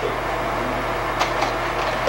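Steady hum of a running slide projector's cooling fan, with a faint electrical hum under it and a couple of light clicks about a second in as the slide changes.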